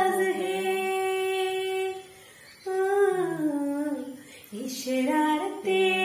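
A woman singing a Hindi film song unaccompanied, holding a long note, breaking off briefly about two seconds in, then going on with more sung phrases.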